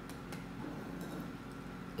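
Faint clinks of a metal ice cream scoop against a stainless steel mixing bowl as muffin batter is scooped out, over a low steady hum.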